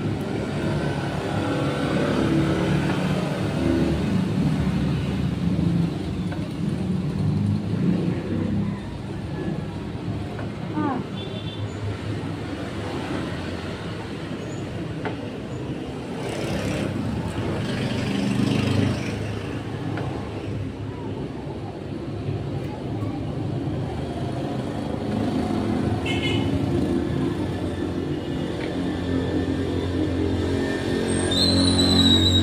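Road traffic noise, a steady low rumble of passing vehicles.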